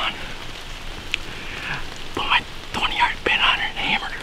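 A man whispering excitedly, mostly in the second half, after a pause with a single small click about a second in.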